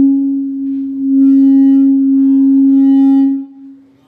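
Microphone feedback through a sound system: a loud, steady low howl with overtones. It dips briefly about a second in and dies away shortly before the end.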